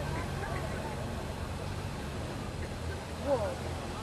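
Several Honda Gold Wing touring motorcycles running at low speed, a steady low engine hum, with a brief faint voice about three seconds in.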